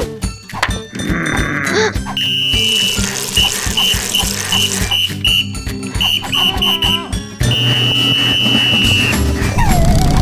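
Coach's whistle blown in a fitness-drill rhythm over cartoon music: one long blast, then a run of short toots about three a second, then another long blast.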